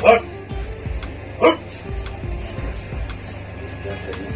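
Two short, loud barks, about a second and a half apart, over background music with a steady beat.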